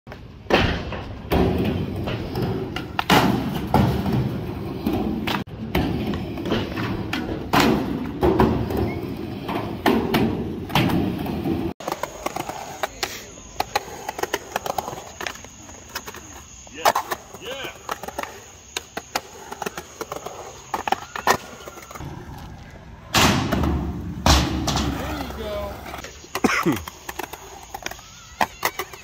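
Skateboard wheels rolling and rumbling on a mini half-pipe, with repeated clacks and thumps of the board. After a sudden cut about twelve seconds in, quieter rolling on a concrete park with scattered knocks, a faint steady high tone behind, and louder board impacts again a little before the end.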